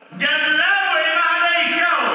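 A man's voice chanting in a drawn-out, melodic line, in the manner of Quranic recitation, starting just after a brief pause.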